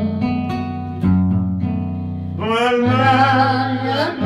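Acoustic guitar playing plucked chords and bass notes. A singing voice with vibrato comes in a little past halfway.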